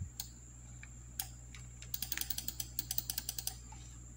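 Clicks from a computer mouse and keyboard as the Photoshop pen tool places path points: a couple of single clicks, then a fast run of about fifteen clicks lasting a second and a half. A faint steady electrical hum runs underneath.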